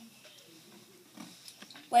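Faint closed-mouth hums and mouth noises of a child chewing a jelly bean, with a few small clicks, then a loud spoken "Wait" at the very end.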